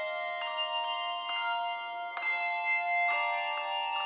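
Handbell choir ringing a slow melody in chords, a new set of bells struck about every half second to a second, each note ringing on under the next.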